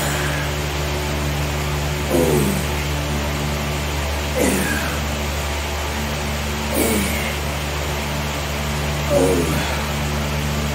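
A man grunting with effort on each dumbbell curl, four short groans falling in pitch, about one every two and a half seconds, over a steady low hum.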